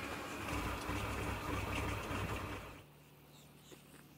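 Tractor-mounted olive tree shaker running: a low engine rumble with a noisy rattle. It cuts off suddenly about three seconds in, leaving only a faint steady hum.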